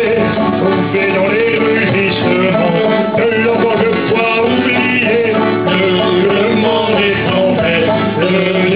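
Live acoustic folk band playing a sea song: acoustic guitar under a wavering melody line, steady and continuous.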